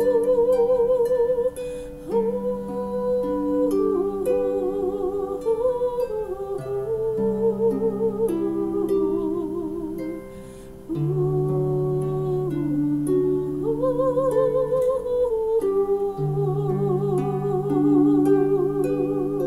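A woman humming a slow melody with vibrato while accompanying herself on a wooden harp, with plucked bass notes and chords ringing under the voice. The music softens briefly about two-thirds of the way through, then carries on.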